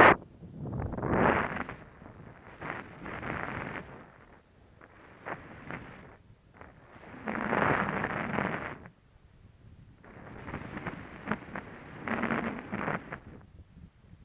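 Skis hissing and scraping over snow in a series of swells, one every couple of seconds as the skier turns, with wind buffeting the microphone and a few sharp clicks; the loudest swell comes right at the start.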